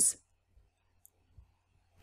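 The end of a spoken word, then near silence broken by three very faint, short clicks.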